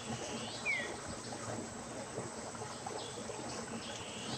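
Steady trickling of water, river water running into a fishpond. About a second in, a bird gives one short falling whistle.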